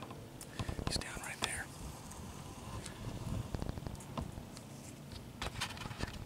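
A man whispering close to the microphone, with scattered short clicks and rustles.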